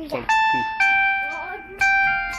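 An electronic chime tune: a few bell-like notes at different pitches, each struck and ringing on.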